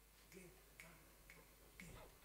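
Near silence broken by four faint, evenly spaced clicks, about two a second: a count-in for the band.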